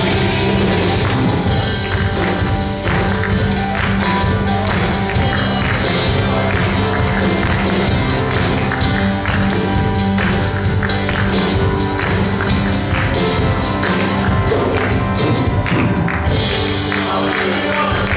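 Live worship band music with keyboard and drums, and hand claps keeping time.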